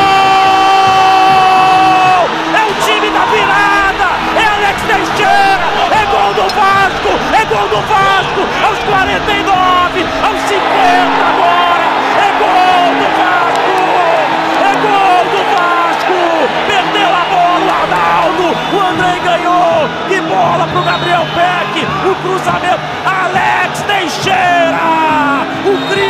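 A football commentator's drawn-out goal shout held until about two seconds in, then excited shouting over a stadium crowd with background music.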